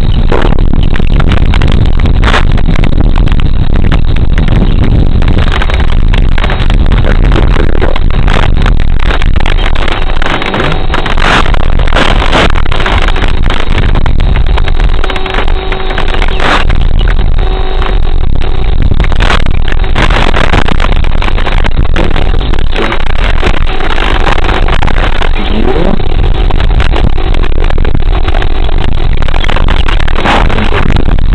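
Loud, steady wind buffeting on the small onboard microphone of an RC plane's FPV camera, heaviest in the low end, with a few knocks.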